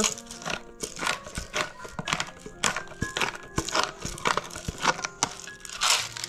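Hand pepper mill grinding black pepper: a dense, irregular run of small crunching clicks, over soft background music.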